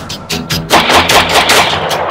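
Rapid gunfire, with a dense burst of shots through the middle, mixed with music that has a steady bass line.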